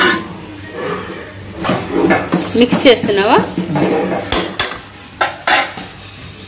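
Metal spoon stirring and scraping chunks of goat tripe with onions in a metal cooking pan, with a run of sharp clinks of spoon on pan near the end.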